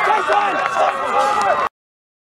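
A group of teenage boys' voices shouting and calling out over one another, with running footsteps, cutting off suddenly about one and a half seconds in.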